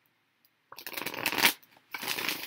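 A deck of tarot cards being shuffled by hand: a dense papery rattle that starts about 0.7 s in, stops briefly after about a second and a half, then starts again near the end.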